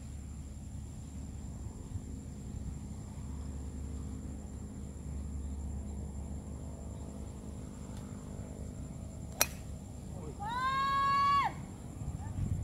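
A golf driver striking a ball off the tee: one sharp crack about nine seconds in. About a second later comes a high-pitched call that rises, then holds for about a second before breaking off.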